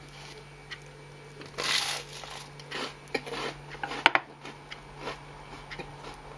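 Buttered toast being bitten and chewed, with crunching sounds, and a sharp click about four seconds in as a table knife is set down on a wooden chopping board.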